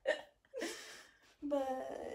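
A woman's voice in short laughing bursts without clear words: a quick breath, a breathy sound, then a longer pitched vocal sound near the end.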